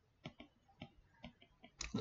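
Faint, irregular clicks of a stylus tapping and sliding on a pen tablet while writing, with a slightly louder sound near the end.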